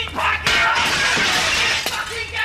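Window glass smashing: a loud crash of breaking glass begins about half a second in and shatters on for well over a second before it cuts off near the end.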